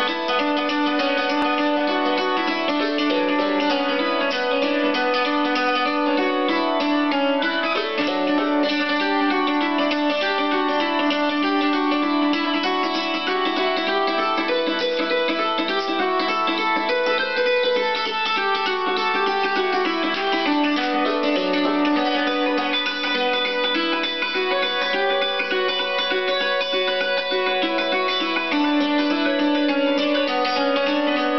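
Hammered dulcimer played with hand-held hammers: a continuous tune of quickly struck notes that ring on over one another.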